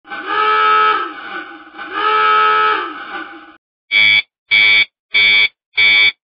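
Electronic alarm-like sound effect: two long wails whose pitch rises and falls, then four short beeps about two-thirds of a second apart.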